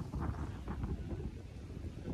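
Wind buffeting the microphone: an uneven low rumble that rises and falls with the gusts.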